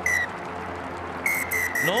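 Rugby referee's whistle blowing for full time: a short blast at the start, then a longer, high, steady blast about a second in.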